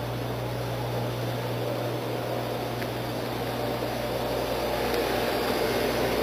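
Running Vitronics XPM3 820 reflow oven: a steady rush of air from its convection fans over a low, even hum, growing slightly louder toward the end.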